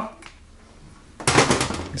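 A scooter engine's valve cover set down on a workbench, making a brief clatter of several quick knocks about a second and a quarter in after a short quiet stretch.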